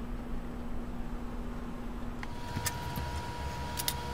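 Clams simmering in a stainless sauté pan: a quiet steady hiss over a low hum. A little over two seconds in the background changes, and a few sharp clicks of a metal utensil against a pasta bowl follow.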